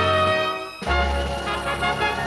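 An anthem played by a band with brass: a long held chord, then a new phrase starting a little before a second in.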